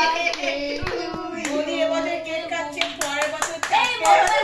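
Several people clapping their hands, with voices over it and a quick run of claps near the end.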